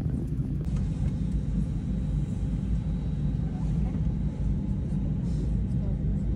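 Airliner cabin noise: a steady low rumble with no distinct events.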